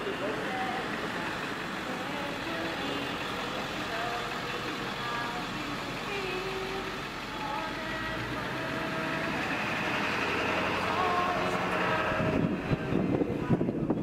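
Outdoor soundtrack of a projected performance video: scattered voices over a steady background noise, with irregular low thumps in the last two seconds.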